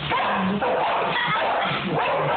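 Pet dogs barking.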